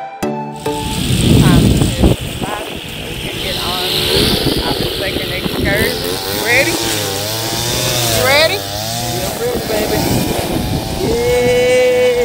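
Music cuts off abruptly half a second in. Then wind buffets the phone's microphone with a heavy rumble, loudest in the first couple of seconds, under voices talking and laughing without clear words.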